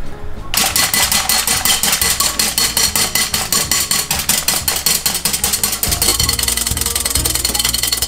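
Wire whisk beating egg whites in a glass bowl: rapid, even clicking of metal on glass at about eight strokes a second, starting about half a second in. Background music plays underneath.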